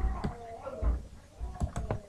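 Clicks from a computer mouse and keyboard at a desk: about four sharp clicks at uneven intervals, some with a dull knock under them.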